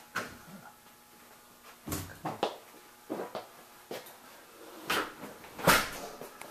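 Several irregular knocks and thumps with short quiet stretches between them, the loudest near the end.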